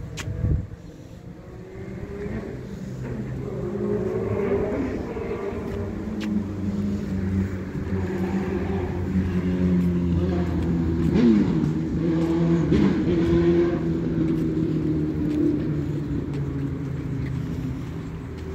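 A motor vehicle engine running and revving, its pitch rising and falling, growing louder toward the middle and fading near the end.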